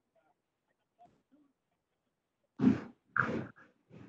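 Two short, loud bursts of a person's voice over a video-conference line, about half a second apart, after a stretch of near quiet.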